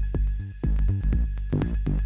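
Eurorack modular synthesizer playing a techno groove: a DFAM kick drum, a pitched bass line from a Loquelic Iteritas, and short clicky hi-hats from Manis Iteritas and Basimilus Iteritas Alter voices, with reverb. A steady high tone is held underneath.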